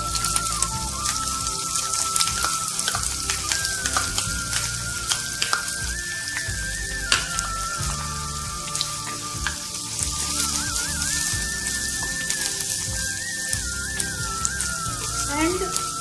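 Chopped onions sizzling in hot oil in a frying pan, the sizzle jumping up as they are tipped in, with scattered sharp clicks. A soft instrumental melody runs underneath.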